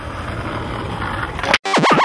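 Skateboard wheels rolling on asphalt, a rumble growing louder, ending in a sharp clack about one and a half seconds in. Near the end a wobbling electronic tone starts, sweeping up and down about seven times a second.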